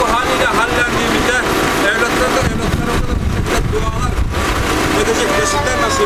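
A man's voice reciting an Arabic prayer (dua) aloud in long, drawn-out phrases, over a constant low rumble.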